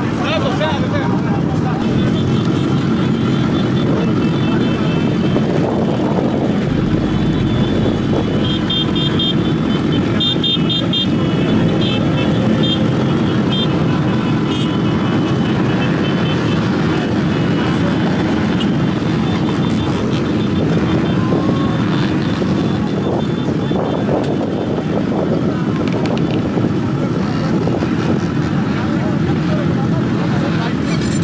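Many motorcycle engines running together amid the chatter of a crowd, a steady mix of engine noise and voices.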